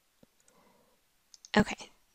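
Two faint computer mouse clicks about a second apart, as a search button and a result checkbox are clicked.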